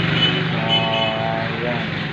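A vehicle horn toots once, starting about half a second in and lasting just over half a second, over a steady low engine hum.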